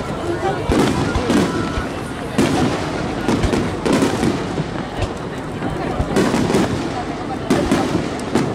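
Aerial firework shells bursting overhead in an irregular, rapid series of bangs, several close together at times, with spectators' voices underneath.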